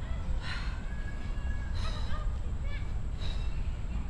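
A woman breathing out hard three times, about once every second and a half, with each knee-tuck rep, over a steady low background rumble.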